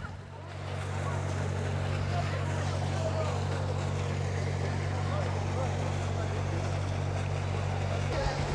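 A steady low motor hum with a faint wash of outdoor background noise and distant voices.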